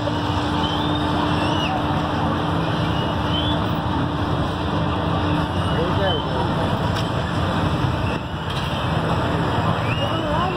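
Steady engine rumble of fairground machinery running, with a low hum that stops about halfway through. Faint voices carry over it now and then.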